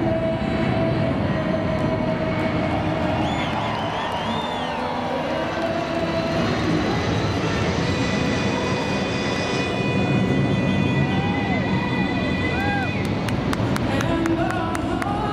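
Four-engined Boeing C-17 Globemaster III jet transport passing low overhead, a steady jet rumble. Long held sung notes and a few rising-and-falling whistles sound over it.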